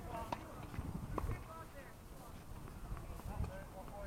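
Tennis ball knocked back and forth on an outdoor hard court during a rally: two sharp strokes, a racket hit and a bounce, within the first second and a half, then fainter knocks. Distant voices are heard underneath.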